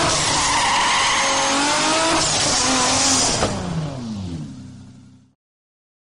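Sports-car engine sound effect revving with skidding tyres. The engine note holds high, then drops in pitch and fades out about five seconds in.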